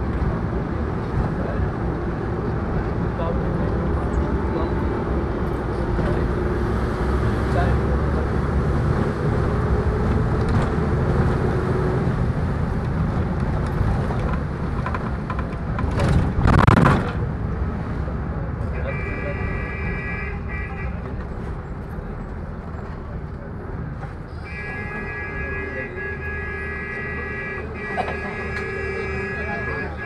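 Steady road and engine rumble heard from inside a moving vehicle, with a brief louder rush about halfway through. Near the end a vehicle horn sounds twice with a steady high tone, first for about two seconds, then for about five.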